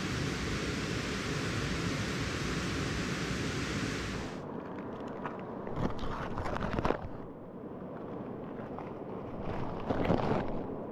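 A steady rushing noise for about four seconds. Then, after an abrupt change, nylon gear rustles and crinkles in bursts as it is stuffed into a backpack, heard from inside the pack.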